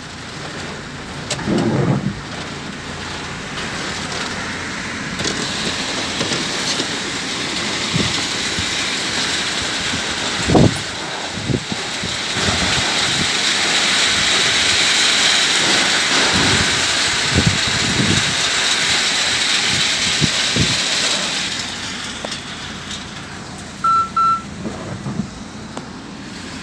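Strong whirlwind gusts rushing past, a loud steady noise that builds to its loudest in the middle and eases off near the end, with a few low thumps. Two short beeps sound near the end.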